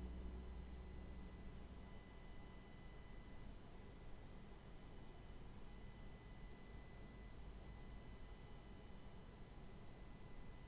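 Near silence: faint hiss with a few thin steady high tones, as background music fades out in the first second or two.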